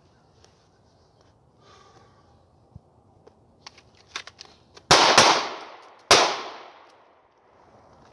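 Three 9mm pistol shots from a Ruger MAX-9 micro-compact in a Mozambique drill: two quick shots about a third of a second apart, then a third about a second later. Each shot leaves a short echoing tail.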